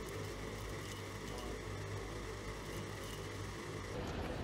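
Electric blower motor of a dust-filter demonstration rig running steadily, drawing air through its intake: an even hum with a faint high whine.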